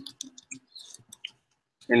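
Typing on a computer keyboard: a quick run of light key clicks for about a second, then a pause.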